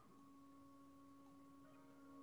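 Near silence: a faint, steady hum of a few pure tones under the room tone.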